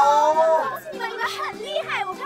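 Excited voices talking and exclaiming over background music, with the voices loudest in the first half-second or so.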